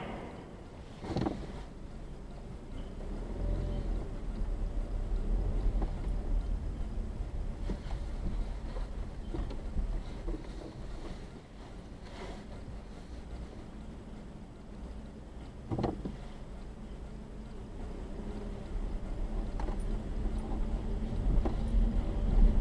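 Low road and engine rumble of a moving car heard from inside the cabin. It swells a few seconds in and again near the end, with a few brief knocks.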